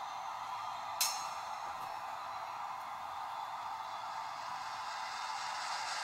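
Faint opening of a music video playing back, a steady thin haze of sound with no bass, and one sharp click about a second in.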